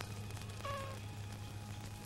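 A steady low hum with one short, slightly falling cry, like an animal call, about two-thirds of a second in.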